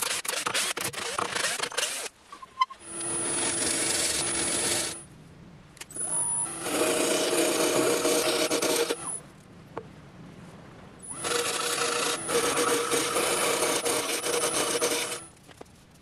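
A cordless drill driving screws into a lathe faceplate, a rapid clicking chatter. Then an English oak block spinning on a wood lathe while a turning tool cuts into it, in three separate passes of a few seconds each, each with a steady whine running under the cutting.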